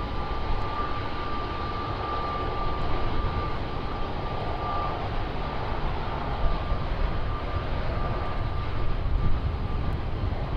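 A Southwest Airlines Boeing 737's jet engines at takeoff power during its takeoff roll. A steady high whine sits over a deep rumble, and the whine fades in and out in the second half.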